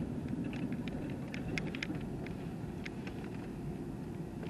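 Steady low rumble of a car's engine and tyres heard from inside the cabin while driving, with a few faint, irregular light clicks.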